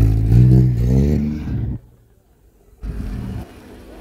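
Car engine revving hard, its pitch climbing, then cut off abruptly a little under two seconds in. After about a second of near quiet the engine is heard again briefly, then more faintly.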